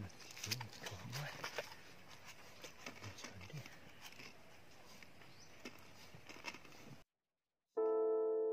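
Faint close handling noise: hands scraping and working in dry soil, with scattered small clicks and rustles. It cuts off abruptly about seven seconds in, and piano music begins just before the end.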